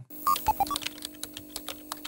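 Computer-keyboard typing sound effect: a run of irregular clicks over a steady synth drone, with a few short electronic beeps in the first second.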